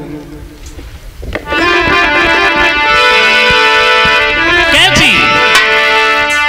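Harmonium playing long held notes and chords, starting about a second and a half in after a short lull. Near the end a voice begins to glide into song over it.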